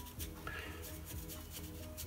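Quiet background music of held notes that step from one pitch to the next, with faint scratchy strokes of a flat watercolour brush across paper.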